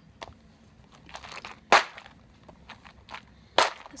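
Clear plastic compartment cases being handled: a series of short plastic clicks, knocks and rustles, the two loudest about halfway through and shortly before the end.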